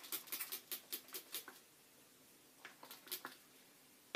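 Plastic trigger spray bottle spritzing water onto hair in a quick run of about ten short sprays, then a few more about three seconds in.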